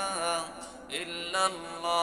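A man chanting Islamic zikr through a microphone: a slow melodic line of held notes that slide in pitch, with a short break about a second in.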